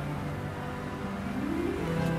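Slow background music of long held notes, with a line of notes rising in steps in the second half.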